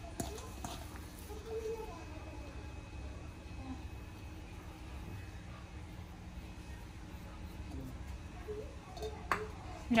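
A hand mashing grated boiled sweet potato and working rajgira flour into it in a steel bowl: faint soft squishing and rubbing over a steady low hum, with a sharp click at the start and another near the end.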